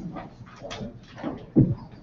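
Bumps and thuds of people getting up and shifting chairs, with a louder thud about one and a half seconds in.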